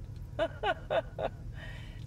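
A woman laughing: four short bursts, each falling in pitch, over the steady low hum of a vehicle on the move.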